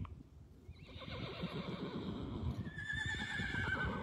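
A horse whinnying: one long, wavering call that starts about a second in and falls slowly in pitch.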